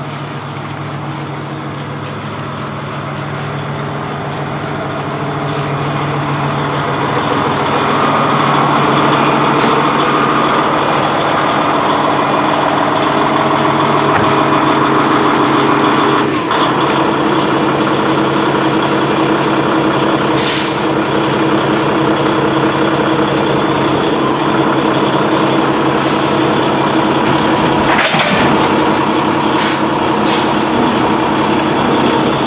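Kenworth semi-tractor's diesel engine running as the truck backs under a trailer to couple to it. The engine grows louder over the first several seconds, then holds steady. In the second half there are several short hisses of air, typical of the truck's air brakes.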